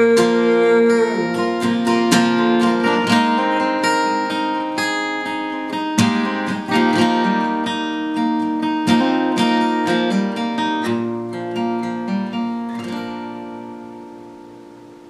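Steel-string Yamaha cutaway acoustic guitar, capoed at the third fret, playing a country picking-and-strumming pattern with strums and picked notes. Near the end the playing stops on a last chord that rings and slowly fades out.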